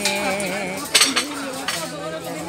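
A metal knife cutting jackfruit flesh from the rind, with one sharp click about a second in, over a held singing voice.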